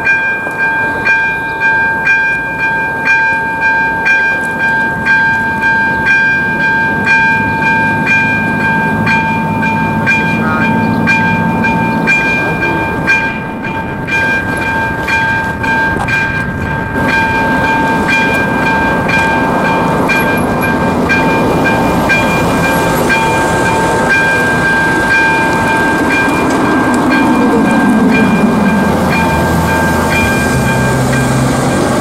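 Electronic level-crossing warning bell (AŽD ZV-02) ringing steadily as a repeated high ding, its strokes running together later on. Road traffic noise grows underneath, and a falling hum comes in near the end.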